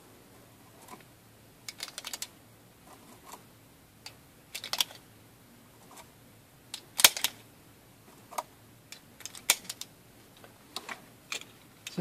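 9 mm cartridges being pressed one at a time into a SIG Sauer SP2022's double-stack pistol magazine. Each round seats with a short, sharp click, the clicks coming a second or two apart, with light handling noise from the loose rounds in between.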